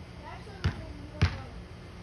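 Two dull thumps a little over half a second apart, part of a run of repeated impacts, with faint talk around them.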